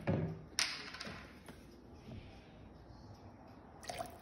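A few light knocks and clicks from a plastic bottle of alcohol being handled on a tabletop. The sharpest click comes about half a second in, followed by faint ticks, and then it goes quiet.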